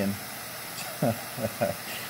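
A man's voice in a few short sounds about halfway through, over a steady background hiss.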